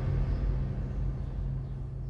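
A low, sustained drone from a tense background score, holding steady low notes and fading away.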